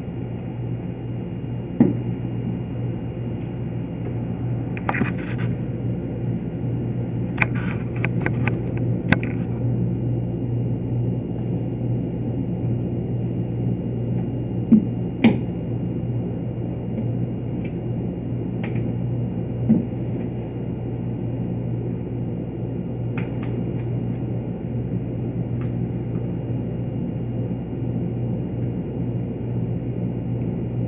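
Steady low electrical hum, with scattered light clicks and taps as test leads and connectors are handled on an electrical trainer board.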